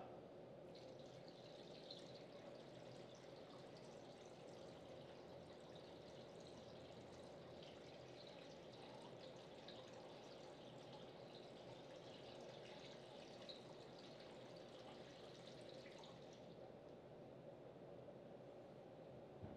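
Faint trickle of water poured from a glass pitcher into a glass vase packed with glass marbles, running steadily from about a second in and fading out near the end.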